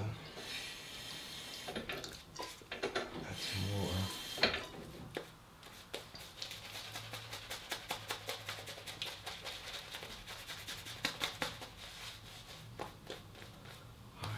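Shaving brush working lather over a stubbled face. Two longer swishing passes come in the first few seconds, then many quick scratchy strokes that die away near the end.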